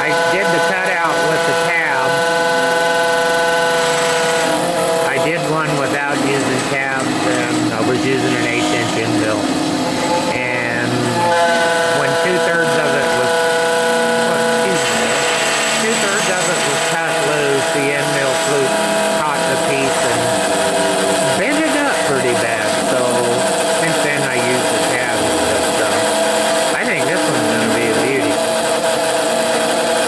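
High-speed spindle on a Grizzly G0705 mill engraving a metal medallion: a steady, multi-tone whine from the spindle, with shifting, gliding whirs from the machine's axis motion as the cutter traces the design. The steady pitch shifts twice, around four seconds in and again about eleven seconds in.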